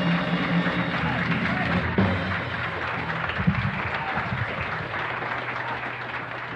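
Live audience applause with voices in the crowd as a jazz quartet's tune ends, the band's last notes dying out under it in the first couple of seconds; the applause then slowly fades.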